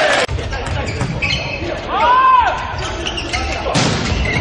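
Indoor volleyball rally in an echoing arena: a volleyball being struck, with short high squeals and voices in the hall, and one sharp hit near the end.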